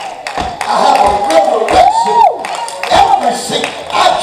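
A preacher's raised voice in long sliding shouts, with one drawn-out cry that climbs and falls about halfway through. Several sharp thumps and some congregation noise come in under it.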